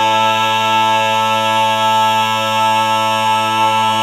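Barbershop quartet singing a cappella, holding one long, steady chord near the close of the song.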